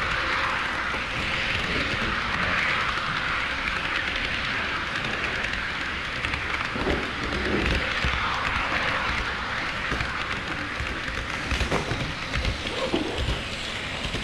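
HO-scale model train running on KATO Unitrack sectional track, heard from a camera riding on the train: a steady rattling hiss of wheels and motor, with a few sharp clicks toward the end.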